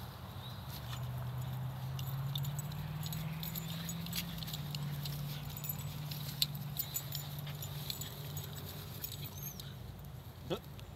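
Small dogs play-wrestling on dry grass, scuffling with scattered light clicks, over a steady low hum that lasts most of the time.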